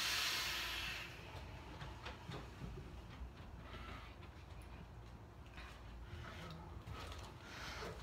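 A strong hissing breath, about a second long and fading, from a man vaping a large cloud; after it only a faint low background rumble.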